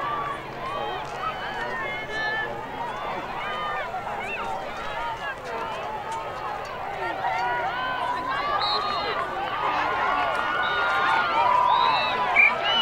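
Many girls' voices calling and shouting over each other across an open playing field, with no single voice standing out, growing louder toward the end.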